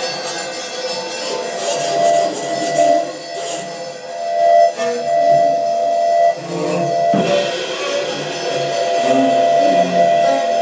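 Free-improvised ensemble music from bass saxophone, cello, percussion and synthesizer: held, wavering tones over scattered metallic percussion strokes, with a sharp percussive hit a little after seven seconds.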